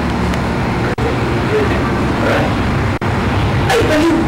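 A steady low hum and rumble under faint, indistinct voices, cutting out for an instant twice.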